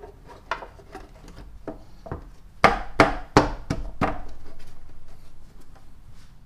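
Plastic engine cover being pushed down into place on its mounts by hand: a series of hollow knocks and clicks, with five sharp ones about three a second near the middle, followed by rubbing handling noise.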